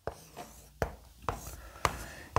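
Chalk writing on a chalkboard: four sharp taps as the chalk strikes the board, with scratchy strokes between them as a line and a circle are drawn.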